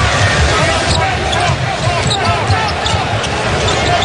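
Live basketball game sound in an arena: the crowd's steady noise, a ball being dribbled on the hardwood floor, and many short squeaks of sneakers on the court.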